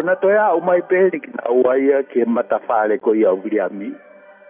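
A man speaking in Tongan, without a break.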